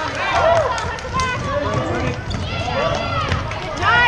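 Basketball sneakers squeaking on a hardwood gym floor and a ball bouncing as players run the court. Voices shout over the top, with an echoing gym sound.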